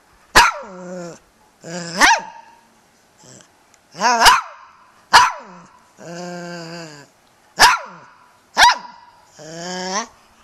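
Toy poodle giving a run of about six short, sharp barks, with drawn-out, pitched yowling sounds between them: the vocal 'talking' she has been trained to do on cue.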